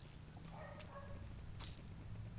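Faint rustling of garden leaves being brushed aside, with a light click at about one and a half seconds in.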